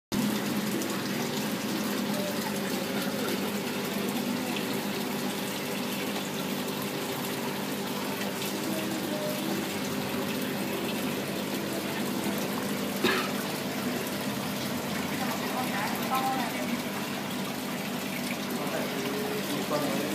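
Aquarium aeration bubbling steadily in a fish tank, over a steady low hum from the pump. A single sharp click partway through.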